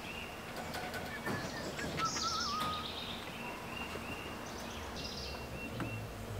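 Wild birds calling in woodland: a short high chirp repeated at a steady pace throughout, with a brief wavering call and some higher twittering about two seconds in.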